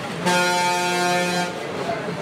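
Vehicle horn sounding once, a single steady tone about a second long, loud over the crowd's chatter.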